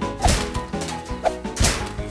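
Cartoon background music with two comic whack sound effects, one shortly after the start and a louder one about a second and a half in.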